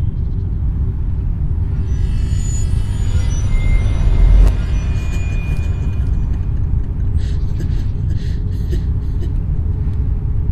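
Low, steady rumbling drone of a suspense film soundtrack, with a shimmer of high tones swelling about two seconds in and ending in a heavy low hit about four and a half seconds in.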